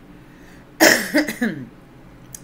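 A woman coughing loudly, a short burst of two or three coughs about a second in.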